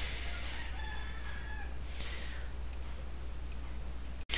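A rooster crowing faintly, held tones rather than clucks, over a steady low hum, with a few faint clicks near the end.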